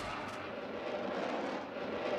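Whooshing sound effect for an animated logo: a steady, noisy rush with no beat, its pitch drifting slowly.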